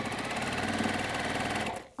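Sewing machine stitching a seam through small quilt patches, running at a steady speed with a fast, even needle rhythm, then stopping shortly before the end.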